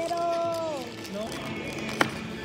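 A person's voice holding one long note that drops in pitch at its end, like a drawn-out 'ooh', followed by faint murmurs.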